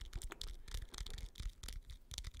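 Fingertips tapping and scratching quickly on a microphone's foam windscreen, close up: a rapid, irregular patter of small clicks.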